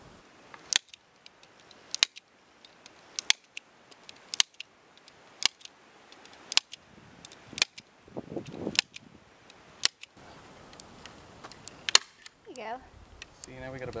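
Staple gun driving staples into a wooden fence post to fasten deer-fence netting: about ten sharp snaps in a row, roughly one a second.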